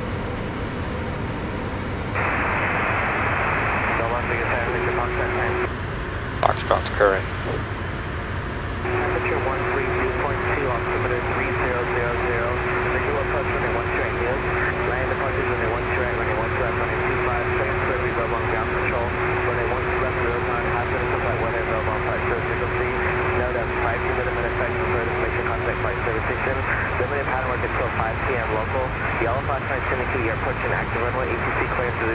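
Steady cockpit noise of a Pilatus PC-24 twin-jet in flight, under a thin, band-limited radio voice that cuts in about two seconds in and runs again from about nine seconds, with a steady tone under it: an airport weather broadcast. Three short sharp knocks come a little after six seconds.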